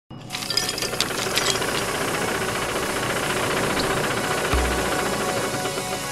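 Loud, dense noisy intro sound effect with scattered clicks and faint tones through it, and a low boom about four and a half seconds in.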